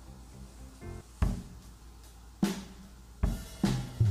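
Opening of a slow band ballad: soft held chords, then four separate drum hits, the last two close together, leading in to the full band at the very end.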